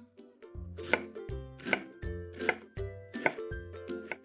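Chef's knife dicing an onion on a wooden cutting board: about four evenly spaced chops, roughly one every three quarters of a second, over light background music.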